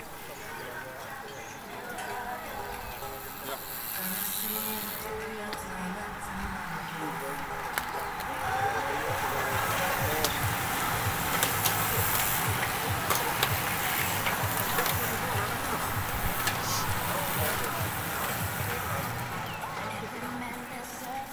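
A bunch of racing bicycles passing close by: a hiss and whir of tyres and drivetrains that swells to its loudest around the middle and eases off toward the end, over background voices and music.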